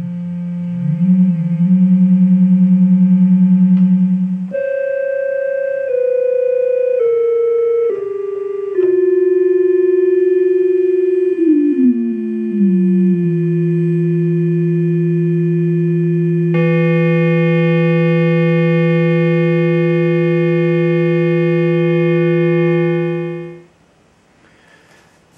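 HackMe Rockit synthesizer's two detuned audio oscillators sounding sustained tones: a held note, then notes stepping down one by one. About 11 seconds in, one oscillator is detuned downward in small audible steps until it sits about an octave below the other. About 16 seconds in, the tone turns brighter and buzzier, and it cuts off shortly before the end.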